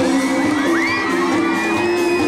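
Live pop band playing, with crowd members whooping in high rising and falling calls over the music.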